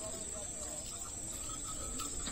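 Insects, crickets or similar, giving a steady high-pitched drone, with faint short calls underneath.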